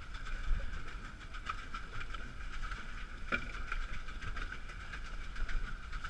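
Water churning and lapping around a pedal catamaran under way on choppy sea, with wind rumbling on the microphone. A short knock sounds about three seconds in.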